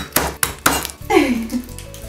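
Flat of a chef's knife smashed down onto garlic cloves on a wooden cutting board: a few sharp knocks in the first second, followed by a woman's laugh.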